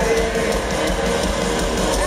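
Rock band playing live in an arena: electric guitars strumming over a drum kit.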